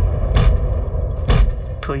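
Heavy thuds about a second apart, a head being slammed against a chalkboard, over a low rumbling drone.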